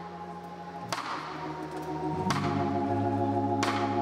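Live soul band music fading in, getting louder: slow, steadily held chords that change every second or so, marked by sharp accent hits about every second and a half.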